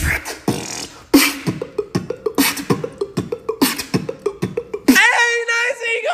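Human beatboxing: quick clicks, hissing snares and deep kick-drum thumps in a fast beat. About five seconds in, it switches abruptly to a pitched vocal sound that slides up and down.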